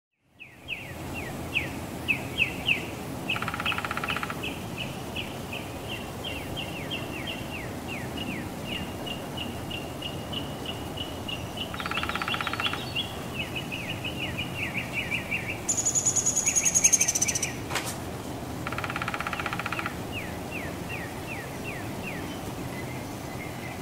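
Woodpecker drumming in three short bursts, each about a second long, over a steady run of down-slurred bird chirps, about three a second. A louder, higher-pitched call breaks in for about two seconds near the end, followed by a single sharp click.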